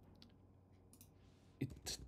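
A few faint computer mouse clicks, the clearest about a second in, against quiet room tone.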